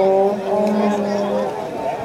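Shouting from spectators and players at a soccer match, over a steady low drone that cuts off about a second and a half in.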